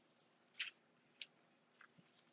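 Three faint clicks at a computer, about half a second apart, the first a little longer and louder than the other two, with near silence between them.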